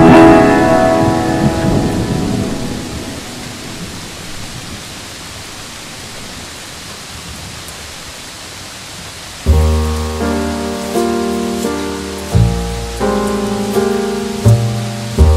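Steady rain with jazz music over it. A chord rings and fades over the first few seconds, leaving the rain on its own, and then a new jazz phrase with deep bass notes comes in about two-thirds of the way through.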